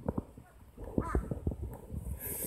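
A crow cawing once, about a second in, over scattered low knocks.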